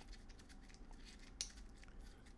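Near silence: room tone, with a single faint short click a little past halfway.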